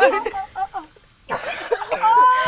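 A woman gives a single loud cough about a second in, after a brief hush, amid the excited voices and laughter of a group of women.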